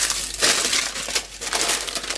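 Plastic poly mailer bag crinkling and crackling as it is grabbed and lifted off the table, with irregular rustles throughout.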